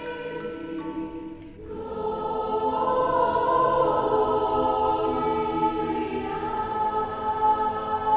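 Background music: a few soft chiming notes, then a choir comes in about two seconds in, singing slow sustained chords.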